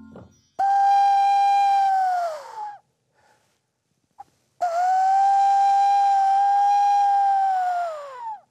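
Hand whistle blown through cupped hands: two long hooting notes, the first about two seconds and the second about three and a half, each sagging in pitch as the breath runs out. It is an owl-like call, made to call an owl.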